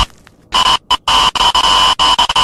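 Electronic static-buzz glitch effect: after a brief drop at the start, a harsh buzzing hum with a steady high tone cuts in about half a second in and stutters on and off in short bursts.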